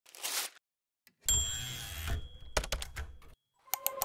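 Intro sound effects: a short whoosh, then a sudden hit with a high ringing tone that fades over about a second, followed by a quick run of sharp clicks like typewriter keys.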